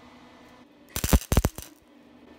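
Wire-feed welder arc crackling in a quick run of short, loud bursts, about a second in and lasting under a second: tack welds on a square-tube frame joint.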